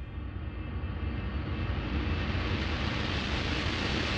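Rising whoosh sound effect: a rushing noise over a deep rumble that swells steadily louder and brighter, like a jet passing close.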